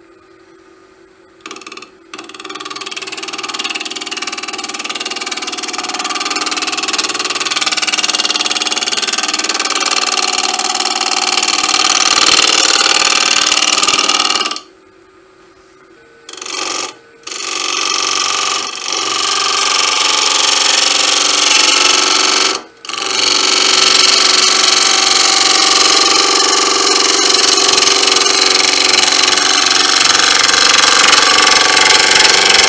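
Hand-held turning tool cutting a spinning wood blank on a lathe: a steady hiss of the cut that starts about a second and a half in and grows louder. It breaks off briefly a few times around the middle, then carries on.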